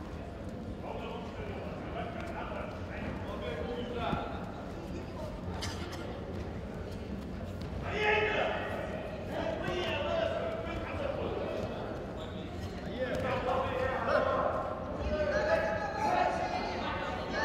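Voices calling out in a large, echoing sports hall around a judo bout, louder about halfway through and again near the end, with a few soft thuds from the mat.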